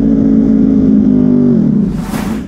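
Stock Ducati Panigale V4 S's V4 engine heard onboard, holding steady high revs, then dropping in pitch about one and a half seconds in as the throttle closes.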